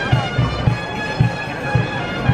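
Bagpipes playing over their steady drones, with low beats about three times a second.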